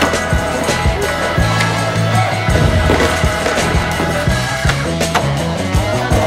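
Skateboard wheels rolling on smooth concrete, with several sharp clacks and impacts of the board during tricks, under loud music with a steady bass line.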